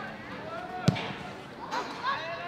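A football kicked once, a single sharp thud about a second in. Players' shouts come faintly before it and louder near the end.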